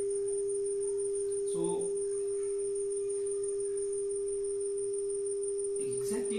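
Steady 400 Hz sine tone from a multimedia speaker fed by a smartphone function-generator app, held at one unchanging pitch. A brief voice-like sound about a second and a half in.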